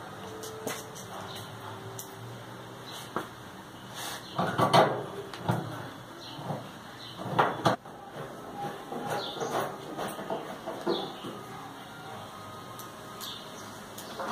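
Screwdriver and sheet-metal panel clatter as screws are driven into a clothes dryer's front panel: scattered clicks and knocks, the loudest about five seconds in and again about seven and a half seconds in.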